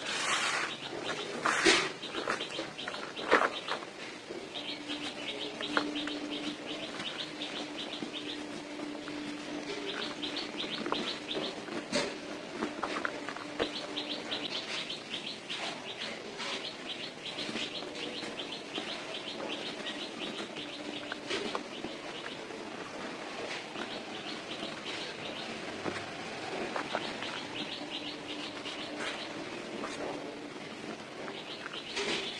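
Dry cement lumps and powder being crumbled and rubbed between hands in a plastic tub, with a few louder crunches near the start. Behind it, birds chirp in long fast runs of short high notes.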